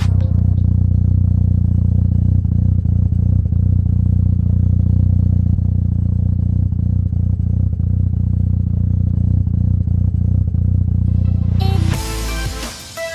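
Mazda FD RX-7's twin-rotor 13B rotary engine idling steadily.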